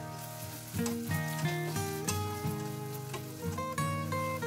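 Grated carrot and spices frying in oil in a steel saucepan, sizzling, under background music of plucked notes that is as prominent as the frying.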